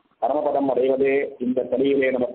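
A man's voice speaking in a drawn-out, chant-like way, starting after a brief pause.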